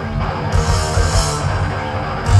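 Thrash metal band playing live: distorted electric guitars, bass and drums, with the cymbals coming back in about half a second in.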